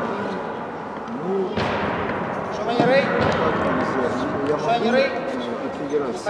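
Voices of people talking and calling across a large hall, with one sharp bang about a second and a half in.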